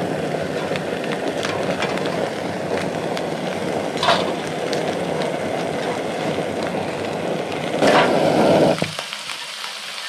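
A backpacking stove burning under a pan of frying meat, a steady rushing sizzle, with a few light clinks as cheese slices are laid on. The steady noise cuts off suddenly about nine seconds in, as the burner is shut off.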